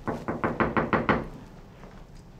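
Rapid knocking on a closed door with the knuckles: a quick run of about ten knocks in just over a second, then it stops.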